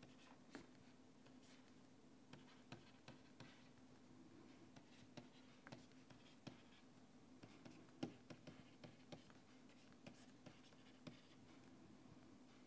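Faint, irregular taps and scratches of a stylus writing on a digital pen tablet, over a low steady hum; the loudest tap comes about eight seconds in.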